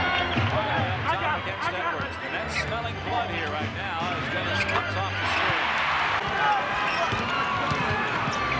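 Basketball game sound: a ball dribbling on a hardwood court amid arena crowd noise. The crowd noise swells about five seconds in.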